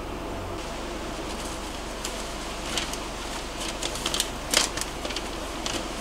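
Scattered small clicks and rustles of hands working a wiring connector and handling a paper sheet, growing busier in the second half, over the steady hum of an electric fan.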